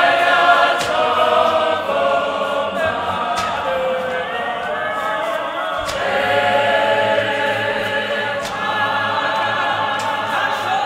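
Church choir singing together in harmony. The sound changes abruptly about six seconds in, and a few sharp knocks sound over the singing.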